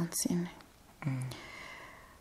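Quiet, intimate speech: a few spoken syllables in the first half second, then about a second in a short low voiced sound followed by a breathy whisper that fades out.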